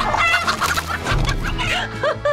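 Chickens clucking in a flurry of short calls, over background music.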